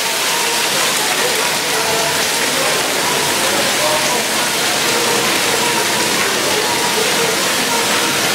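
Water jets and sprayers of a splash-pad play structure hissing and splashing steadily, with voices in the background.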